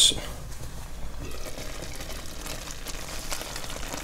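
A pot of mince stew simmering on a gas hob, bubbling softly; the bubbling becomes audible about a second in.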